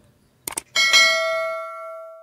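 A subscribe-button sound effect: two quick mouse clicks, then a single bell ding about three quarters of a second in that rings on and slowly fades.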